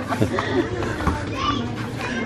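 Children playing in the street, their voices calling out and overlapping, with laughter.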